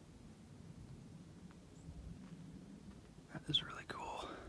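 Quiet background with a faint low rumble, and a brief whisper about three and a half seconds in.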